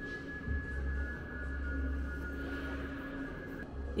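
A low steady hum that swells about half a second in and eases off near the end, under a thin, high, steady tone, like an electronic drone in a room.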